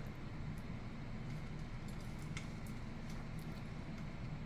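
A person chewing a mouthful of biscuit, with a few faint soft clicks of the mouth over a steady low room hum.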